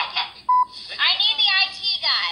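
A short electronic beep, one steady tone lasting a fraction of a second, about half a second in, between bursts of high, excited voices.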